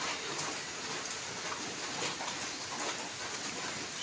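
Ballpoint pen scratching across paper as a word is handwritten: faint, irregular strokes over a steady background hiss.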